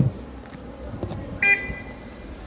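A short, high beep lasting about half a second, about one and a half seconds in, over steady street background noise. It is preceded by a dull thump at the very start.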